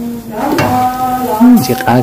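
A voice singing or chanting long held notes over the bubbling of a big pot boiling on a gas stove. The pot's metal lid is lifted off.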